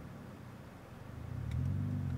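Infiniti G35's 3.5-litre V6, heard from inside the cabin, labouring at low revs as the clutch is let out for a hill start in first gear. The engine note sags, then grows louder about a second and a half in as the car pulls away. The car shakes because too little gas is given, so the engine is on the verge of stalling.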